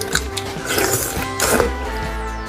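Background music with loud slurping and sucking of soft bone marrow at the mouth, twice: about a second in and again near the end.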